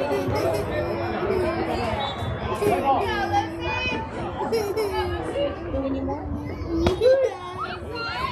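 Many overlapping voices of girls and spectators chattering and calling out at a softball game, with a single sharp crack near the end.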